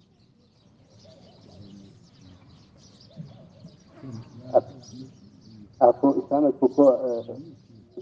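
Small birds chirping faintly in the background during a pause in a man's talk; his voice resumes about six seconds in.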